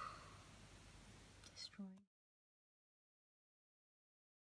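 Near silence: faint room tone with a brief murmur of a voice about halfway through, after which the sound cuts out completely.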